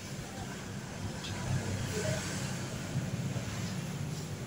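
Soft hiss of a hand-pump pressure sprayer misting potted plants, a little stronger between one and two and a half seconds in, over a steady low background rumble.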